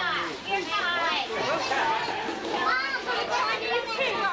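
A group of children talking and calling out over one another, many voices overlapping and no words standing clear.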